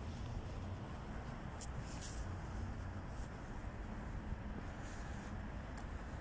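Steady low rumble of outdoor street background noise, with a few faint short ticks scattered through it.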